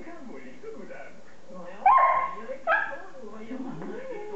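A beagle barking twice in play, high-pitched: a longer bark about two seconds in, then a shorter one just after.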